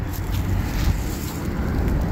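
Low rumbling wind noise on the microphone, with light rustling and scraping of loose soil handled by gloved hands.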